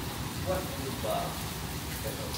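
Heavy rain pouring down, a steady hiss of rain falling on the ground and pavement.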